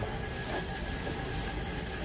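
Steady background noise of a produce market: a low rumble and hiss with a faint, steady high tone running through it.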